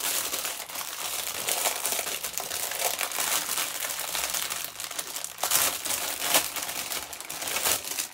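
Clear plastic bag crinkling and rustling continuously as a cap is unwrapped from it, with several louder crackles in the second half.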